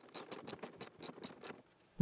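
Small ratchet wrench clicking faintly in quick, even ticks, several a second, while backing out a 10 mm bolt on a pillar grab handle; the clicking stops about one and a half seconds in.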